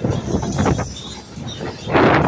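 Wind buffeting a phone's microphone on a fast-moving amusement ride: an uneven rush of noise with a low rumble and no clear voice.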